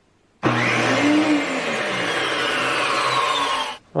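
Bandsaw, thickness planer and circular saw switched on together, their motors starting at once in a loud, dense whir with a steady hum; the noise cuts off suddenly near the end. The combined start-up surge reached about 137 amps.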